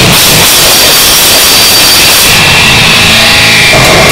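Loud harsh noise music: a dense, unbroken wall of distorted noise. The highest part drops away about two seconds in and a thin high whine runs through it.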